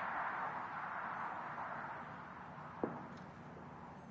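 Spectators applauding after an approach shot, the clapping fading away. One short sharp sound comes near the end.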